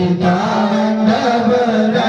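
Male voices chanting Vedic Sanskrit mantras for the Rudrabhishek, a steady recitation with drawn-out syllables.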